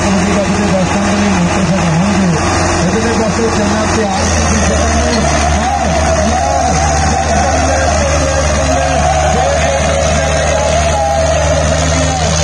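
Two diesel farm tractors pulling against each other in a tug-of-war, their engines held at full load in a steady, loud drone that deepens about four seconds in; the red tractor is straining hard enough to lift its front wheels.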